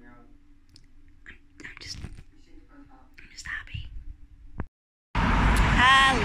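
A woman whispering softly in short phrases with pauses over a faint room hum. Near the end there is a click and a brief dropout, then loud road-traffic noise comes in suddenly.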